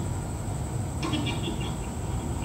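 Steady low rumble of a diesel passenger train idling at the platform, with a run of short, quickly repeated high chirps starting about a second in.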